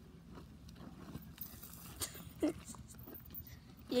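Doberman digging in dry dirt with its front paws: faint, irregular scratching and scraping of loose soil, with a sharper click about two seconds in.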